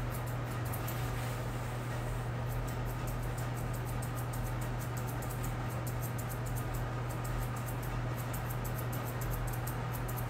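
A steady low hum, with faint, irregular light clicks of grooming thinning shears snipping the hair around a dog's eyes.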